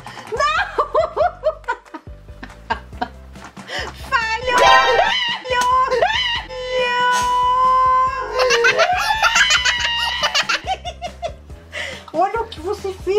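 A woman laughing and shrieking in long, high, held cries, her reaction to being squirted with water by a shark dentist toy. Light background music plays underneath.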